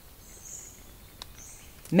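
Faint rainforest ambience with two short high-pitched hissing sounds, about half a second and a second and a half in, and a single click between them.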